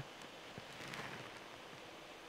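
Faint steady hiss, close to silence, with a few faint ticks and a slight swell about a second in.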